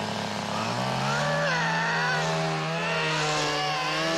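A chainsaw engine running, its pitch rising over the first second and then holding steady at high revs, with a wavering higher sound over it for a couple of seconds.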